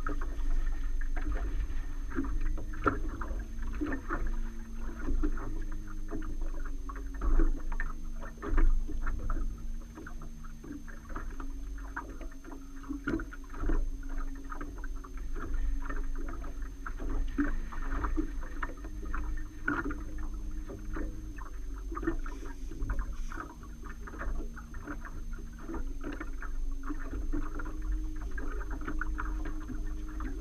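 Small fishing boat on the water: waves slap and knock irregularly against the hull over a low rumble of wind on the microphone. A low steady hum, which shifts pitch now and then, runs underneath.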